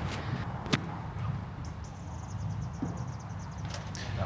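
A wedge striking a golf ball on a short pitch shot: one sharp click about three-quarters of a second in, over faint outdoor ambience. A quick, even run of faint high ticks follows in the middle.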